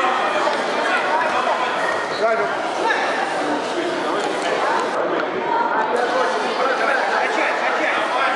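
Crowd chatter: many people talking at once, a steady hubbub of overlapping voices in a large hall.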